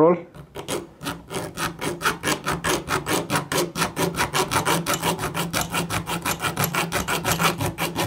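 A bare hacksaw blade worked by hand back and forth across a soft-metal screw head, cutting a screwdriver slot, in quick, even strokes at about six a second.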